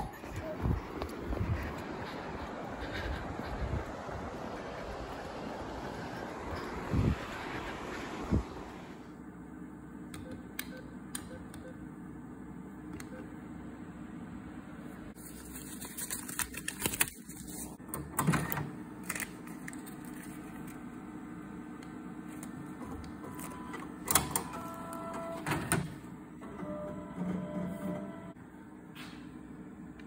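Self-service NCR cash deposit machine taking in and counting banknotes: a steady machine hum with scattered clicks and mechanical rattles, and a few short electronic beeps in the last quarter. Before it, for the first eight seconds or so, a stretch of rustling noise with a few knocks.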